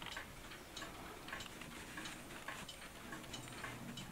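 Faint, steady ticking of clocks, a regular run of light ticks.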